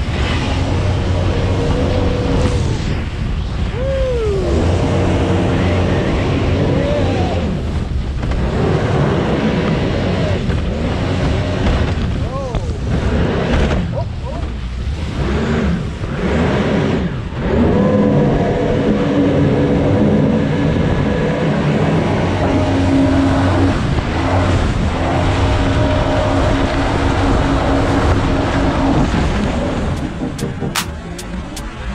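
Engine of a Ferrari-bodied water car roaring as it runs fast over the sea. Its pitch rises and falls as the throttle changes, with water rushing and spraying against the hull.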